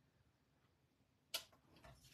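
Near silence, then a single sharp click of a clear acrylic stamp block being handled on the stamping mat, a little over a second in, followed by faint handling sounds.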